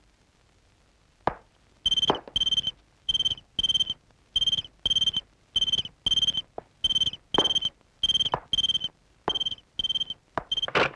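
Telephone ringing: short, shrill electronic rings about twice a second, starting about two seconds in, after a single sharp click.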